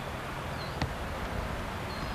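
Steady outdoor background noise with tape hiss, a single sharp click just under a second in, and a couple of faint, short high chirps.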